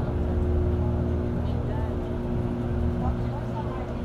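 Low, steady road rumble of a moving car heard from inside the cabin, under the fading held notes of soft background music. A new phrase of the music begins at the very end.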